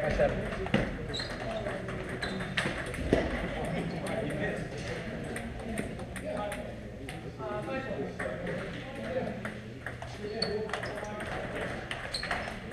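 Table tennis balls clicking sharply and irregularly off paddles and tables from several rallies going on at once.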